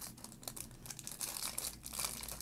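Plastic foil wrapper of a Topps baseball card pack crinkling softly and irregularly as it is handled in the fingers.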